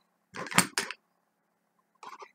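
A brief clatter of clicks and knocks from a plastic analogue voltmeter case being handled, lasting about half a second, with one sharper knock in the middle.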